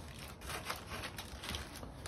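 Knife carving a smoked warthog leg in a foil-lined tray, with the aluminium foil crinkling under the hands: a run of small irregular crackles and clicks.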